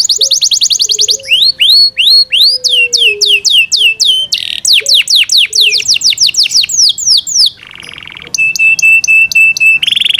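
Yorkshire canary singing loudly in a continuous song. Fast trills of quick downward-sweeping notes are broken by a run of slower swooping notes, with a short buzzy roll about eight seconds in, then a string of quick, even notes on one pitch.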